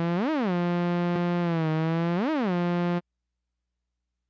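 Rob Papen Predator software synthesizer holding one bright, buzzy note. The pitch wheel bends it sharply up and straight back down twice, once near the start and again about two seconds later. The note cuts off suddenly about three seconds in.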